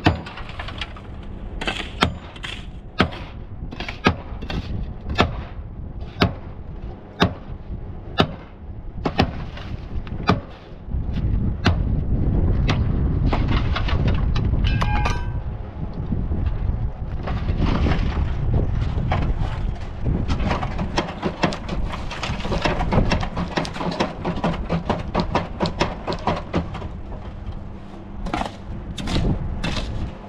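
Sharp metallic knocks on a steel column formwork while fresh concrete inside it is rodded down with a long pole, about one knock a second at first. Later they turn into a fast, dense rattle with a heavy low rumble, and there is a brief ringing note about halfway through.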